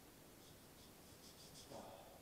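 Near silence: room tone with a few faint, light scratching sounds, then a soft dull knock near the end.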